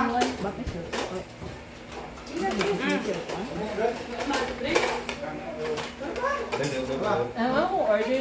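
Serving utensils and cutlery clinking against plates and serving trays, in short scattered clicks among people's voices.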